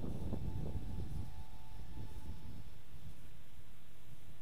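Wind buffeting the microphone as a low steady rumble, with the faint high whine of a small brushless FPV racing quadcopter's motors, the Walkera Rodeo 110, flying some way off; the whine fades out about three seconds in.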